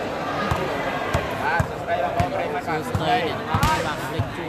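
A volleyball bounced on the court several times, each bounce a dull knock at uneven intervals, under the chatter and shouts of a crowd in a large hall.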